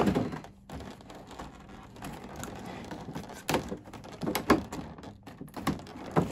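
Clear plastic blister packaging being handled and pulled apart: a crinkly rustle with a few sharp knocks and taps, the loudest about three and a half seconds in and again near the end.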